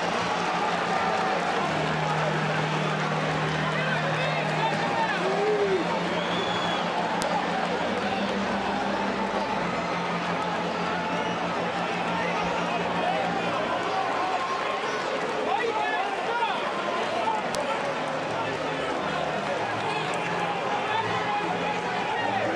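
Ballpark crowd noise mixed with indistinct shouting from the players scuffling on the field during a brawl. It is a steady din of many overlapping voices with no single clear speaker.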